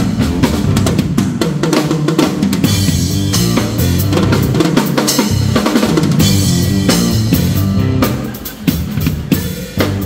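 Live drum kit solo with rapid bass drum and snare hits and rimshots, over a steady bass line. The drumming thins out briefly near the end.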